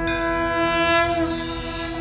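Broadcast transition sting for an animated title graphic: a loud sustained synth chord of several held tones, with a high falling whoosh sweeping down over it from about a second in.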